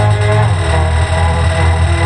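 Looped beatbox track playing from a loop station: a steady, heavy bass drone under several layered, sustained hummed lines, giving an electronic dance-music sound.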